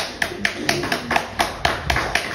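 Hands clapping close by in a steady rhythm, about four claps a second.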